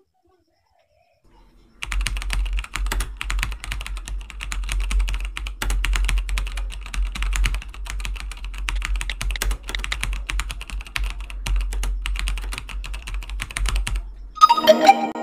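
Fast, continuous typing clicks on a keyboard, starting about two seconds in, over a low steady hum.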